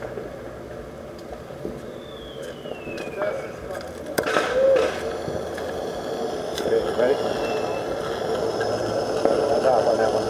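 Fireworks launching close by: one sharp launch bang about four seconds in, and two thin whistles that fall in pitch, over people's voices.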